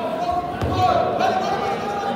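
Wrestlers' bodies hitting the wrestling mat with a dull thud about half a second in, as a takedown brings them down, over voices calling out in the gym.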